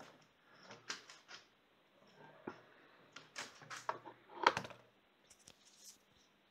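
Scattered clicks and knocks from objects being handled, with the loudest knock about four and a half seconds in.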